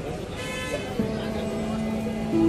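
Vehicle horn sounding a long, steady note that starts about a second in, over a background of crowd chatter and street noise.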